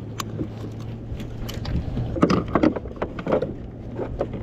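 Scattered knocks and thuds on a plastic kayak hull as a freshly landed Spanish mackerel is handled on the deck, louder a little past the middle. Underneath there is a steady low hum and the wash of water and wind.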